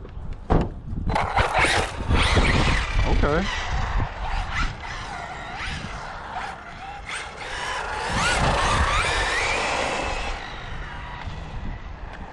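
Electric RC truck, a Traxxas Rustler 4x4 with a brushless 2200KV motor, driving around on pavement. The motor whine rises and falls with the throttle and is loudest after about eight seconds.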